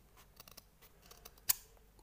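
Steel scissors cutting through satin fabric pasted onto a stiff backing sheet: faint scratchy snips, with one sharp click about one and a half seconds in.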